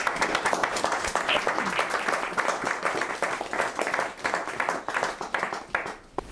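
A small audience applauding, steady clapping that dies away near the end.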